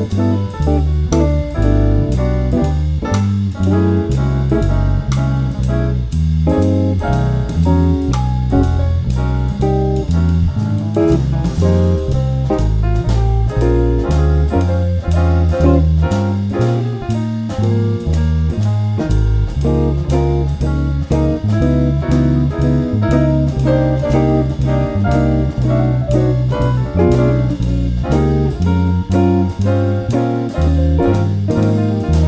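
Electric bass playing a walking line of evenly stepped low notes under a jazz backing track with drums and a guitar solo.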